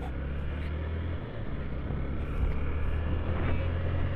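Motorcycle riding along at a steady speed: a continuous low engine drone under a haze of road noise.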